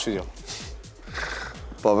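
A man's brief laugh falling in pitch near the start, trailing off into low studio background noise.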